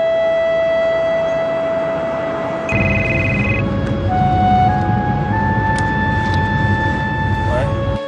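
Soft background music of long held notes. About three seconds in, a low steady car-cabin rumble comes in, and a mobile phone gives a brief electronic ring.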